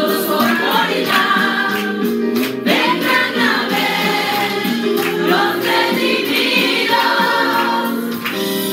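A small group of women singing a religious song together into handheld microphones, with sustained, continuous voices.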